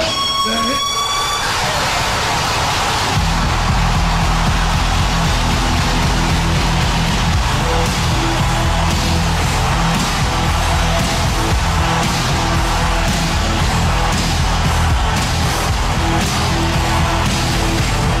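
A man's shout into a microphone ends right at the start. An arena crowd then roars, and about three seconds in loud heavy rock entrance music with a pounding beat starts and plays over the crowd.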